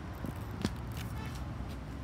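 Steady low background rumble with a few faint, short clicks in the first second.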